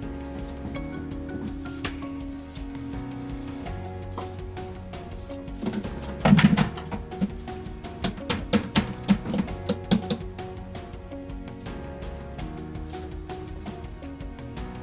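Background music plays throughout. About six seconds in comes a cluster of knocks and rattles, then a string of sharper separate knocks over the next few seconds: plastic containers being handled against a plastic bucket.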